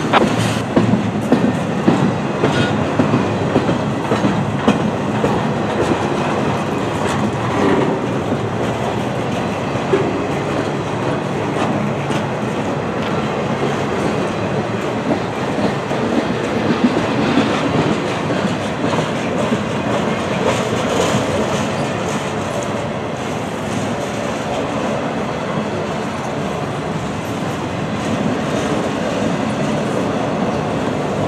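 Freight train of intermodal well cars, many of them empty, rolling past close by: a steady rumble of steel wheels on rail with clickety-clack from the wheels over the rail joints. Sharp clicks and clanks come thick and fast in the first several seconds, then the sound settles into a steadier roll.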